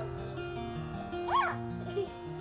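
Background music with held notes, and a dog's short high-pitched whine about a second and a half in as it reaches up for a treat.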